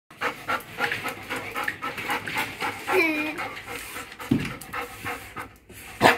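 Excited dog panting hard, quick rasping breaths about three to four a second, with a short pitched vocal sound about three seconds in.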